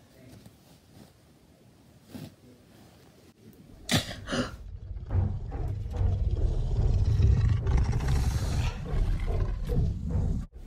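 A low, deep roar, given to a plush dinosaur, starting about halfway through after a near-quiet stretch and a single click, and holding on to the end.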